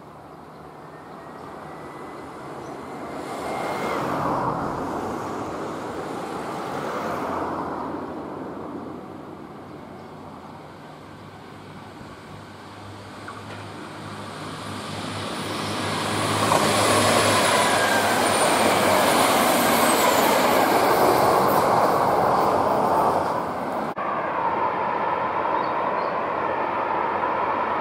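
A KTR8000 diesel limited express train approaching and passing close by, its diesel engines and wheels on the rails growing loud in the second half, with a faint high whine. An earlier swell of noise comes a few seconds in, and the train sound cuts off abruptly near the end.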